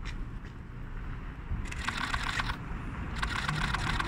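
Outdoor street ambience: a steady low rumble of wind and distant traffic, with two short runs of rapid clicking or rattling in the second half.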